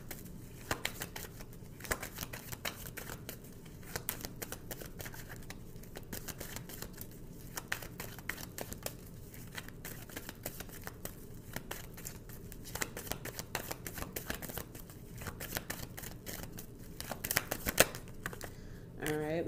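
Tarot deck being shuffled by hand: a continuous, irregular patter of quick, light card clicks and snaps, a little louder near the end.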